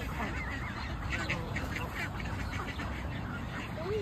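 A flock of Canada geese calling: many short, overlapping honks and clucks throughout, with one louder, lower honk near the end.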